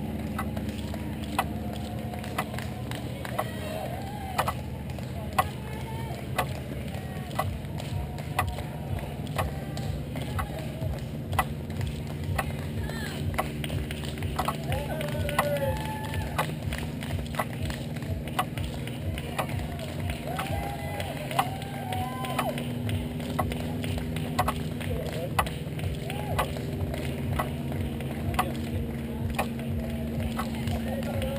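Runners' footfalls slapping on asphalt as they pass, mixed with spectators clapping and scattered shouts and cheers.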